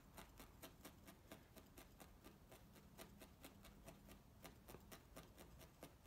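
Felting needle stabbing repeatedly through wool roving into a styrofoam block, a faint, fast run of soft ticks at about four or five a second.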